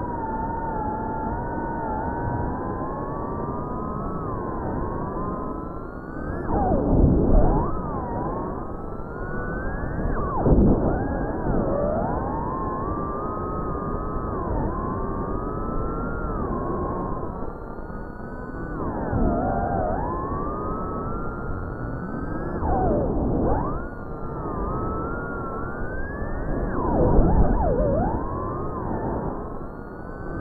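The brushless motors of a Cinelog 35 FPV cinewhoop drone whine, their pitch gliding up and down with the throttle. There are several louder surges with a rush of air, the loudest near the end.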